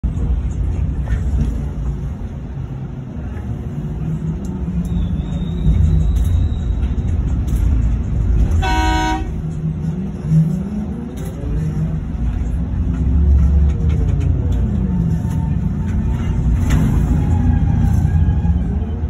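Electric mining shovel heard from inside its cab while loading: a steady low rumble, with whines rising and falling in pitch as the machine swings and dumps into a haul truck. One short horn blast sounds about halfway through.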